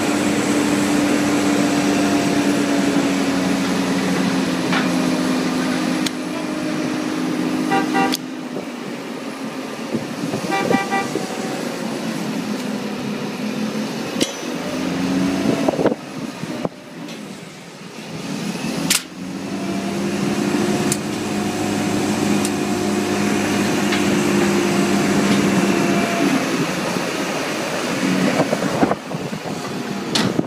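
Mobile crane's engine and hydraulics running under load while it hoists a heavy machine unit, a steady pitched drone that eases off in the middle and comes back. Two short runs of rapid beeps come about eight and eleven seconds in.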